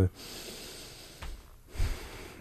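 A man breathing out heavily through the nose, close to a studio microphone, in a pause between words; a brief low thump follows near the end.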